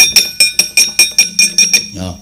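Kepyak, the metal plates hung on the wayang puppet chest, struck in a rapid run of about five strokes a second, each stroke ringing with a bright metallic clang.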